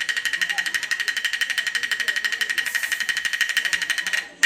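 Rapid, even roll on a metal percussion instrument of the opera band, about eleven strokes a second, with a bright ringing tone.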